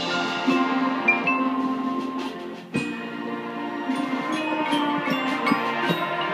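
Marching band playing full: sustained wind chords over front-ensemble mallet percussion. A little before halfway the sound briefly drops back, then comes in again on a sharp accented hit, with ringing high mallet notes after it.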